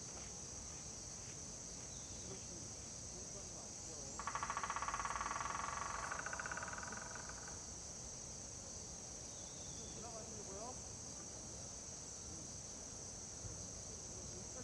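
Steady high-pitched chorus of crickets and other insects. About four seconds in, a louder rapid buzzing trill cuts in for roughly three seconds, then stops.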